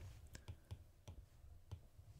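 Several faint, sharp taps of an Apple Pencil's plastic tip on an iPad's glass screen as it enters numbers on a pop-up keypad.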